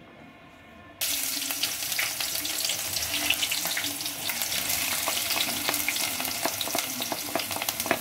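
Chopped red onion frying in hot cooking oil in a stainless steel pot, stirred with a wooden spoon. After a quiet first second it starts suddenly, then holds as a steady loud sizzle with many small crackles.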